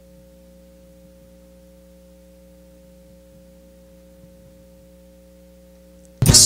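A faint, steady electrical hum made of several constant tones, unchanging throughout, with nothing else heard.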